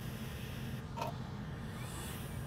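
Low, steady background hum and hiss, with a single faint click about a second in.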